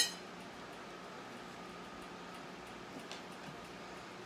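One sharp click right at the start, then quiet kitchen room tone with a faint steady hum, broken by a faint tick about three seconds in.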